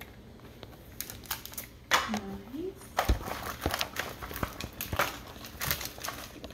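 Crinkling of plastic wrappers and bags being handled, dense with small crackles, starting about a second in. A single dull knock on the wooden table about three seconds in.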